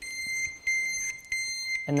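Ghost gimbal controller's buzzer sounding a high steady tone, broken by short gaps about every two-thirds of a second. It signals that the encoder field calibration is running, the period in which each axis must be moved.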